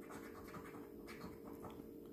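A coin scraping the silver coating off a paper scratch card in a run of faint, quick strokes, uncovering one number.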